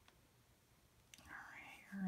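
Near silence: room tone, with a faint breathy sound in the second half, a drawn breath or whisper just before speech resumes.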